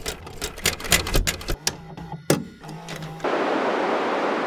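Videocassette pushed into a front-loading VCR, the tape-loading mechanism clicking and clunking, with a louder clunk after about two seconds and a brief motor hum. About three seconds in, a steady hiss of TV static takes over.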